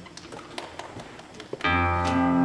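A few faint stage taps, then about one and a half seconds in a live band comes in with guitars and bass sounding a sustained chord that keeps ringing.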